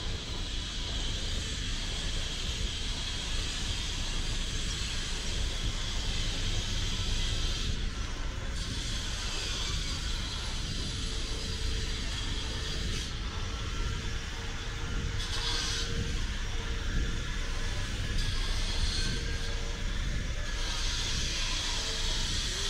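City street ambience: a steady low rumble of traffic with an even high hiss over it that cuts out briefly several times, and a faint steady hum in the second half.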